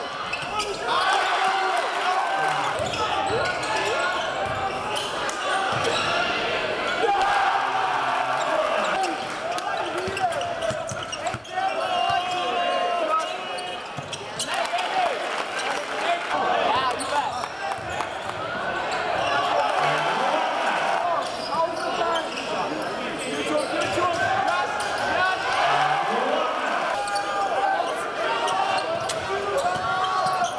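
Basketball game sound in a large gymnasium: a steady din of crowd voices over court noise, with the ball bouncing on the hardwood floor.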